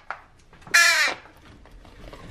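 Baby crow giving one begging caw about halfway through: a hungry young crow calling for food.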